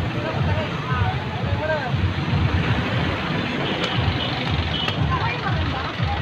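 Street traffic: vehicle engines running close by in a steady rumble, with snatches of people's voices.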